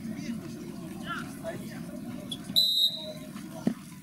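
Referee's whistle: one short, loud blast of about half a second, signalling that the free kick can be taken, with players' voices around it. A single thump follows about a second later.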